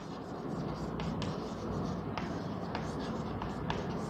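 Chalk writing on a blackboard: a faint, steady scratching broken by several sharp taps as the chalk strikes the board.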